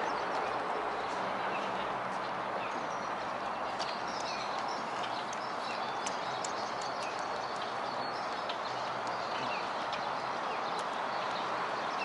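Footsteps on a wooden boardwalk, a scatter of light knocks, over a steady hiss of outdoor background noise.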